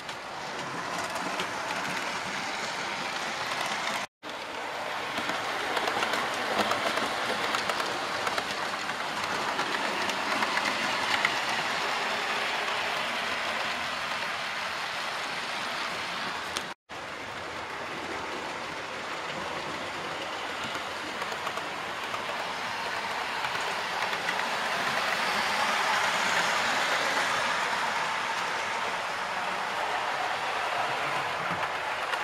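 Model trains running on a model railway layout: a steady clatter and rumble of small metal wheels on the track. The sound cuts out for an instant twice.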